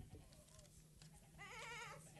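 Near silence: room tone, with a faint, quavering voice for about half a second near the end.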